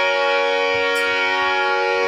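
Harmonium holding one long final chord: several reed notes sounding together, steady and unchanging.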